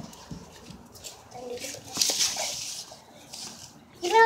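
Handling noise: small knocks and rustling as plastic toys and the phone are moved about on the floor, loudest as a rustle about two seconds in, with a faint brief sound from a child's voice just before it.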